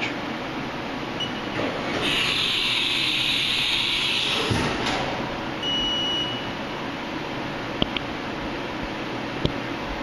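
Haas Super Mini Mill 2 automatic tool changer running a tool change over the machine's steady hum: a hiss of air for about two seconds as the tool is released in the spindle, then a knock, a brief high whine, and two sharp clicks near the end.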